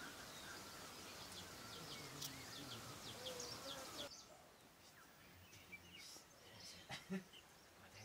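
Faint birdsong: short chirps and quick downward-sweeping calls over a quiet background. About halfway through it drops away suddenly to near silence, broken by a few soft knocks near the end.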